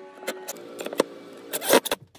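Makita cordless impact driver driving a screw into a pine board: the motor whine fades early on, then come a few clicks and a loud burst of rattling impacts near the end.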